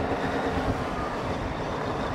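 Heavy diesel logging machinery running with a steady, even rumble.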